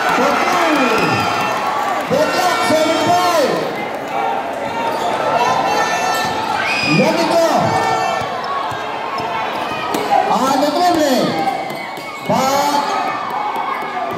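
Basketball being dribbled on a concrete court while spectators keep up loud, rising-and-falling yells and shouts, over the steady noise of a large crowd.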